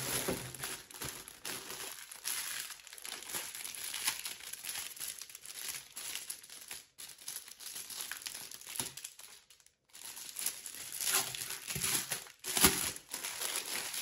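Clear plastic packaging crinkling as a wrapped muslin swaddle blanket is handled. The rustling comes in irregular flurries with brief pauses and grows louder near the end.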